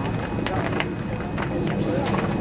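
Indistinct chatter of nearby ballpark spectators, with a few short sharp clicks among it.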